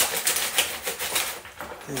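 Crackling and crinkling of a foil-lined bag as dry spray malt is shaken out of it into a bucket of wort, with a plastic spoon stirring the liquid. The crackles are short, sharp and irregular.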